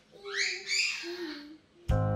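A child's high-pitched wordless vocal sounds, a couple of quick rising squeals, followed by a softer hum; background music starts abruptly near the end.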